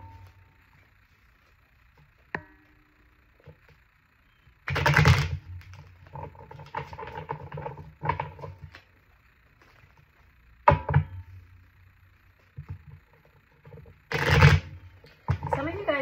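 A deck of oracle cards being shuffled by hand, heard as three short rustling bursts about five, eleven and fourteen seconds in, with a soft voice in between.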